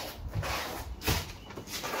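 Sneakers scuffing and stepping on a concrete patio during spinning footwork, several short scrapes a fraction of a second apart.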